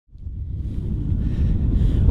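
Wind buffeting a handheld camera's microphone on a moving bicycle: a low, steady rumble that fades in at the start.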